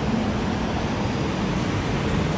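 Steady city street noise with car traffic close by, a constant low rumble without distinct events.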